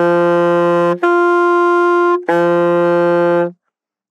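Alto saxophone playing an octave exercise on D: a held low D, then the D an octave higher, then the low D again, each note tongued and held a little over a second. The octave key is pressed for the upper note, with faster, higher-pressure breath.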